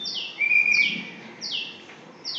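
A bird calling over and over, short falling chirps about every 0.7 s, with a brief steady whistled note about half a second in.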